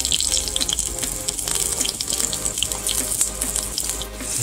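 A cup of water poured into a pan of hot oil and fried chicken wings, with steady crackling from the hot fat.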